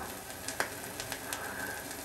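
Surface noise of an old gramophone record playing on a Rigonda radiogram: a steady hiss with a few scattered clicks.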